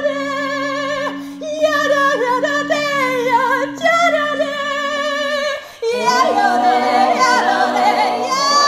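Improvised a cappella singing: a female soloist sings wordless phrases with a strong vibrato over a low drone held steady by other voices. About six seconds in, the full mixed choir comes in singing together.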